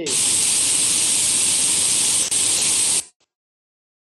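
Loud, steady hiss of static in a video-call audio feed, lasting about three seconds and then cutting off suddenly into dead silence.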